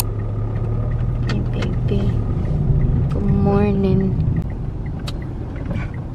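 Car engine and road rumble heard from inside the cabin while driving. A brief voice sound comes about three seconds in. From about four seconds on, the turn-signal indicator ticks evenly, about three clicks a second.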